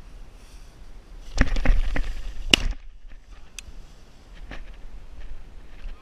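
Shotgun shots: a loud blast about a second and a half in, further cracks close behind, and a second loud blast about a second later.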